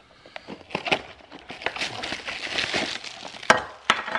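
Cardboard box being opened and a metal lighter in a clear plastic bag pulled out and handled, with plastic crinkling and cardboard scraping, and a sharp knock about three and a half seconds in.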